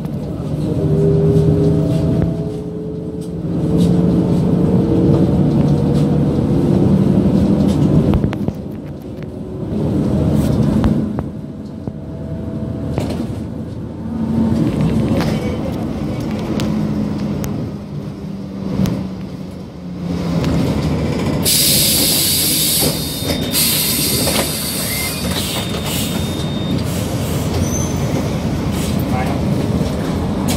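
City bus engine and drivetrain heard from inside the bus, with whines that rise in pitch as the bus picks up speed. About two-thirds of the way in, a loud hiss of air lasts about five seconds.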